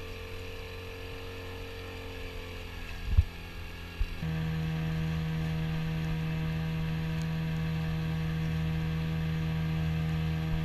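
Small outboard motor on an inflatable dinghy running steadily, with two thumps about three and four seconds in. A little after four seconds the sound jumps to another steady engine drone with a stronger low hum.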